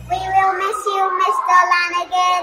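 A young child's voice singing a short melodic phrase, with held notes. Backing music cuts out about half a second in, leaving the voice alone.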